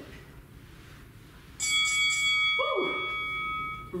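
Interval timer chime, a bell-like tone that comes in about one and a half seconds in and rings steadily for about two seconds, marking the end of the work period and of the round. Partway through it there is a falling swoop.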